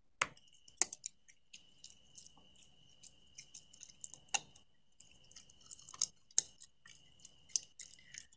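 Black bear munching acorns from a seed tray: faint, sparse, irregular crunches and cracks, the sharpest about four seconds in and a few more around six seconds. A faint steady high tone runs underneath.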